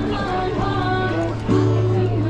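Music: a song with singing and guitar.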